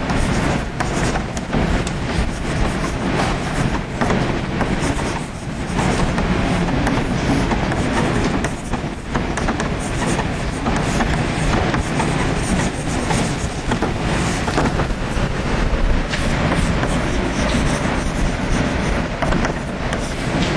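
Chalk writing on a blackboard: a continuous run of scratches and taps, loud and close, over a low rumble.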